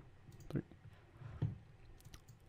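Quiet computer mouse clicks, a few sharp clicks as points of a cut are placed in 3D modelling software.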